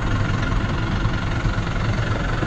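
Vehicle engine idling with a steady low rumble.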